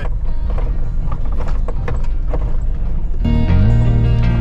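Jeep cab noise on a rough gravel trail: a steady low rumble with frequent knocks and rattles as it jolts over bumps. Guitar music comes in about three seconds in.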